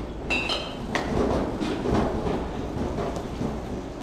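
Steady rumbling background noise of an outdoor batting cage arena, with a few faint knocks and a brief high squeak about half a second in.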